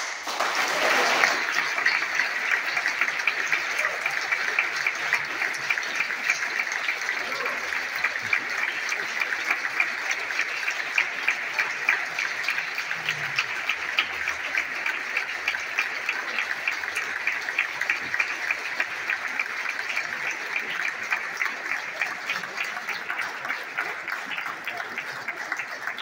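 Audience applauding: many hands clapping break out suddenly and keep going steadily, easing slightly near the end.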